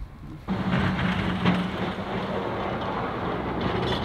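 Road traffic passing on a snow- and slush-covered road: a steady tyre hiss over a low engine hum, starting suddenly about half a second in.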